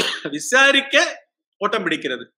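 A man clearing his throat behind his fist, starting with a sharp cough-like burst and going on for about a second, then speaking again near the end.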